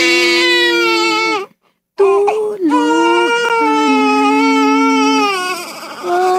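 A baby crying in long, drawn-out wails, breaking off briefly for breath about a second and a half in, then wailing again with the pitch stepping down in later cries.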